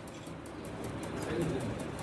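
Pause in a man's speech: faint steady background noise, with a soft low sound about a second in.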